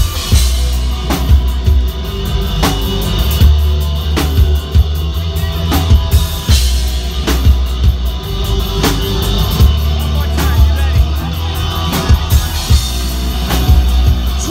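Live rock band playing loudly: drum kit with heavy kick drum and regular hits, electric guitar and bass, in an instrumental stretch without singing.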